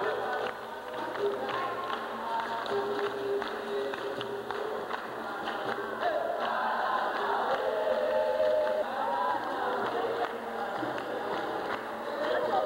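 Capoeira roda music: a group singing in chorus over berimbaus, an atabaque drum and hand clapping.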